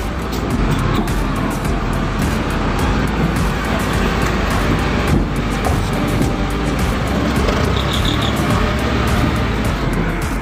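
Steady, loud engine noise from vehicles running close by, a continuous dense din with no clear single event.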